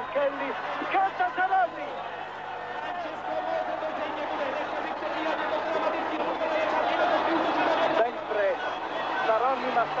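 Crowd cheering and shouting along a cycling race's finish straight as the riders sprint for the line, with bursts of excited shouting voices. The noise swells toward a peak near the end.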